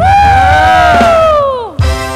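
A long, high, drawn-out shout held for about a second and a half that sags and then slides sharply down in pitch, over a low music beat. Entrance music with a steady keyboard chord and a drum hit comes in near the end.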